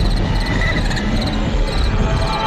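Crickets chirping in repeated short pulsed trills, over a loud, steady low rumbling noise.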